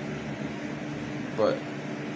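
A steady mechanical hum over a faint hiss, like a room fan or air conditioner running. A man speaks a single word about one and a half seconds in.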